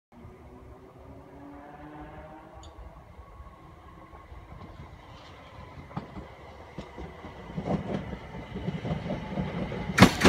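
Class 377 Electrostar electric multiple unit approaching, its wheels clicking over the rail joints more and more loudly as it nears. A faint whine rises in pitch over the first few seconds.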